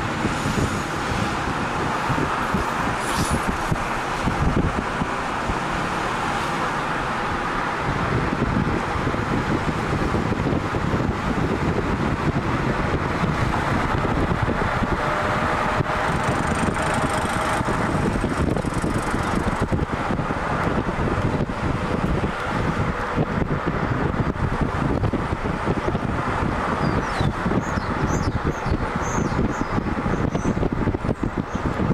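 Steady rumble of road and engine noise from a moving car.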